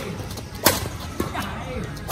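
A badminton racket hitting a shuttlecock during a rally: one sharp, crisp hit about two-thirds of a second in, followed by a fainter tap just after one second.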